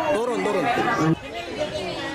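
People's voices talking and chattering. A louder voice breaks off sharply about a second in, leaving quieter background chatter.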